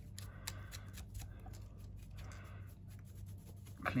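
Faint soft rubbing and a few light clicks: a small brush swept over a camera body, with the camera being handled.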